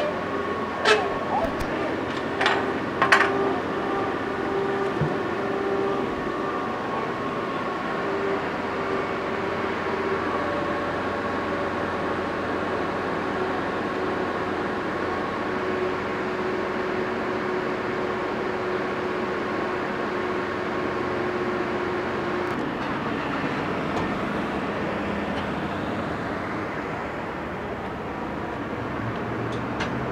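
Steady mechanical drone of race-pit background noise with faint voices mixed in, and a few sharp clicks between about one and three seconds in.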